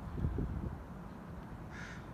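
A crow cawing once near the end, a short harsh call. Soft low rustling is heard in the first half second.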